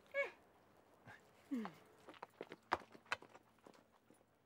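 Footsteps on a paved sidewalk: a handful of sharp, irregular clicks in the second half, one standing out loudest, after a brief word and a falling vocal sound.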